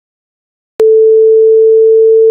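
Silence, then about a second in a loud steady test tone of one pitch begins with a click: the sine-wave reference tone that goes with a colour-bar test pattern.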